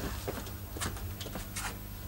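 A few faint footsteps on a stage floor over a low, steady hum.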